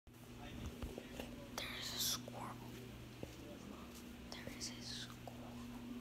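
A person whispering faintly in short hissy bursts, over a steady low hum.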